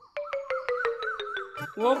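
Comic sound effect: a fast, even rattle of clicks, about seven a second, over a tone that slowly falls in pitch, lasting about a second and a half.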